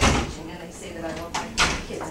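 Sharp knocks or thumps in a room: one at the very start and two more close together about a second and a half in, over low background chatter.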